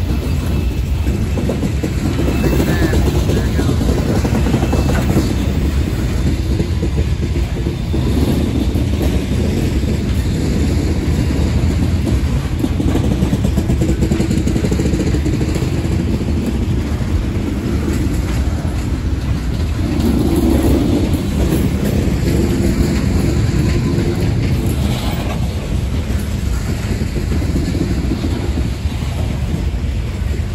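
Loaded coal cars of a freight train rolling past close by at low speed: a steady rumble of steel wheels on rail.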